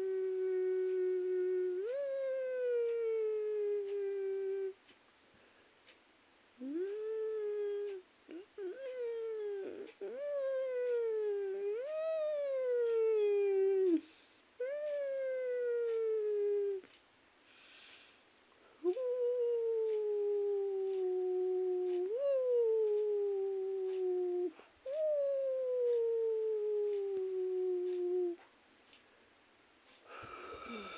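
A long, drawn-out howl, repeated over and over. Each call jumps up in pitch and then slides slowly down over two or three seconds, with short breaks between calls.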